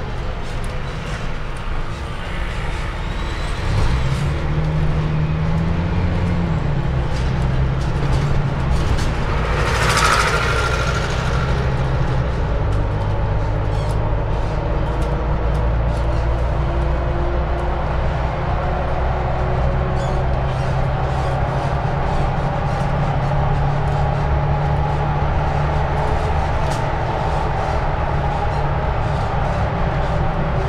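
Mercedes-Benz Citaro city bus heard from on board, its engine running. The engine note rises about four seconds in and drops back about two seconds later, then settles into a steady drone. A short hiss of air comes about ten seconds in.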